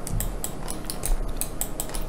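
Quick, irregular light clicks and taps, many in a row, from a computer mouse and keyboard being worked.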